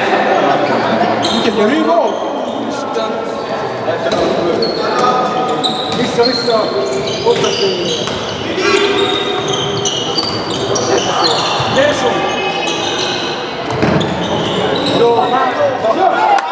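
Indoor handball game: the ball bouncing on the wooden floor, shoes squeaking and players calling out, echoing in a large sports hall.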